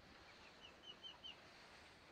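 A chicken peeping faintly: a quick run of about six short, high peeps, about four a second, in the first second or so, over otherwise near silence.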